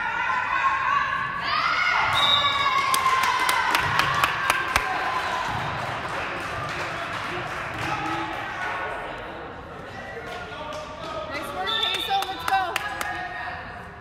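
Players' voices shouting and calling in an echoing gymnasium during a volleyball rally, with sharp knocks of ball contacts and claps. A second burst of calls and sharp claps comes near the end, after which the hall goes quieter.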